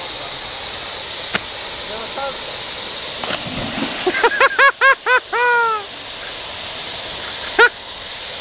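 Fountain jets spraying with a steady hiss, and a man jumping into the shallow fountain basin with a splash about three and a half seconds in. Right after, a voice lets out a quick run of short cries, and one more near the end.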